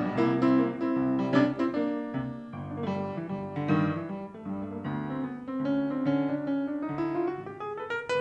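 Upright piano playing a blues instrumental passage in chords. Near the end, a harmonica note slides up and is held.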